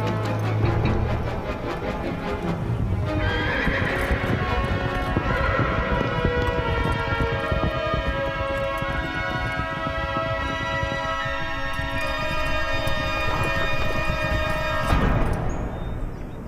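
Horses' hooves clip-clopping as several riders go along, with a horse whinnying, under held orchestral film-score music that breaks off about a second before the end.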